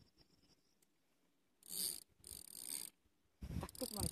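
Fishing reel drag ticking out line in two short bursts, then running on continuously near the end, the sign of a fish pulling line from the reel.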